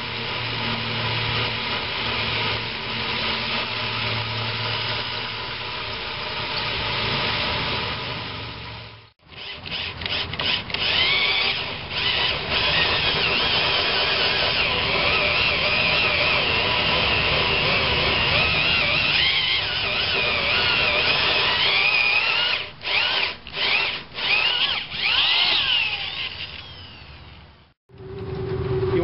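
Electric drill driving a 2-3/8 inch hole saw through a fiberglass boat hull: steady motor whine and grinding of the saw teeth, the pitch wavering as the load changes. There is a brief break about nine seconds in, several quick stops and restarts near the end, then it fades out.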